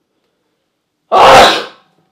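A single loud human sneeze about a second in, lasting about half a second.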